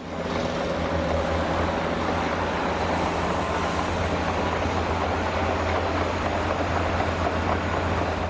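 Diesel dump truck's engine running steadily while its hydraulic hoist raises the bed to tip out a load of sand.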